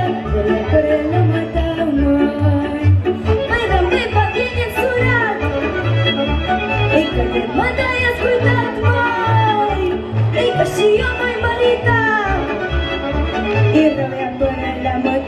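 Romanian folk music performed live: a woman's amplified singing voice over a backing with a regular bass beat and fiddle-like melody lines.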